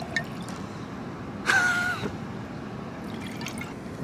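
Rosé wine trickling and dripping into a wine glass as a pour from the bottle finishes. About a second and a half in there is a brief, louder sound with a steady pitch that drops off after half a second.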